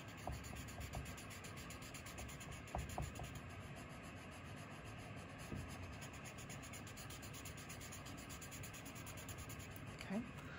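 Paper tortillon (blending stump) rubbing graphite into paper, a faint steady scratchy rubbing with a few light ticks in the first few seconds.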